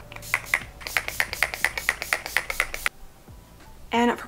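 A finger-pump facial mist spray, NYX Bare With Me prime, set and refresh spray, pumped in a rapid run of short spritzes, about six a second, onto the face. The spritzing stops about three seconds in.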